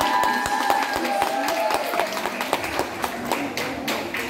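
Latin ballroom dance music ending, its last held notes dying away about two seconds in, followed by scattered sharp taps and a few claps.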